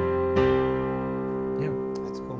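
Piano chords played on a digital keyboard: an open chord held and ringing, with a new chord struck about half a second in that rings on and slowly fades.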